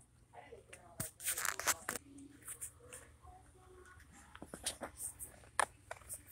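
Faint voices, with a cluster of sharp clicks and rustles about a second in and another click near the end.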